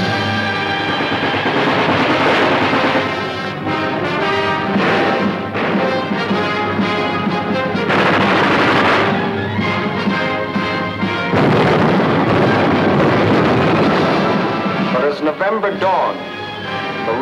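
Orchestral film music with the sounds of gunfire and explosions mixed over it, the battle noise coming in loud stretches.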